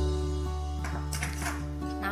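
Background music with a held low note and sustained soft tones.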